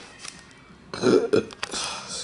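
A man's short burp about a second in.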